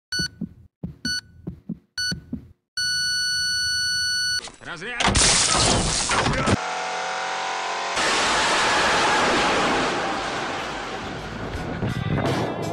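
Three short electronic beeps about a second apart and then a long held beep, like a countdown. These are followed about five seconds in by a sudden loud blast and a long rushing roar of an explosion and fire.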